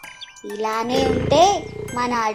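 A high-pitched cartoon character voice speaking, with light children's background music and tinkling chimes behind it. The voice comes in about half a second in.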